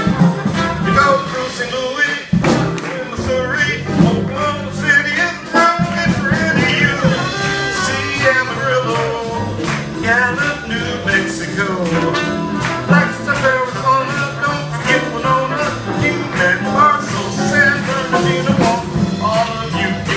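Live jazz-blues band playing with a male singer, piano and drums keeping a steady beat under the wavering vocal line.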